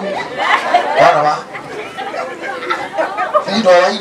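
Several people talking over one another, with one louder call near the end.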